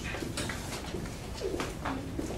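Classroom background: a short low, falling vocal sound, like a murmured 'ooh' or a coo, about one and a half seconds in, over light rustling and scattered clicks.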